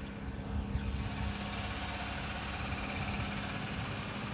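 Lifted GMC Sierra pickup's engine idling steadily, with an even low hum.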